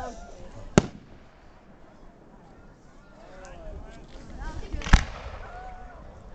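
Aerial firework shells going off: a sharp bang about a second in and a louder one about five seconds in.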